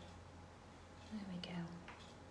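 Soft murmured voice, one brief falling utterance about a second in, over a low steady hum.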